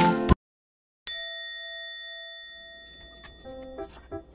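Background music cuts off shortly after the start. After a moment of silence a single bright chime strikes and rings out, fading away over about two seconds. Faint music with light taps comes in near the end.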